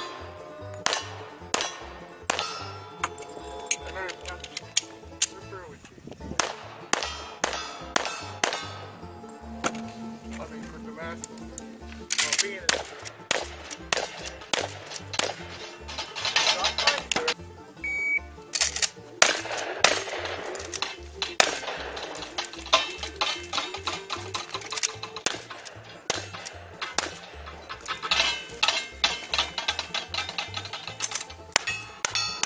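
Bluegrass banjo music with a steady bass beat, laid over a string of sharp gunshots from a handgun and a shotgun, with metallic rings of hits on steel targets.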